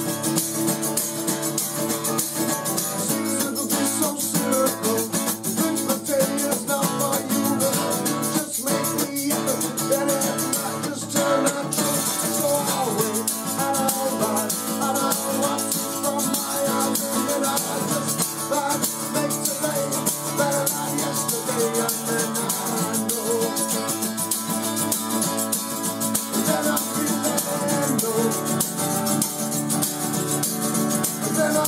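Live acoustic song: an acoustic guitar is strummed steadily while a man sings. A hand-held shaker-type percussion instrument is shaken in time throughout.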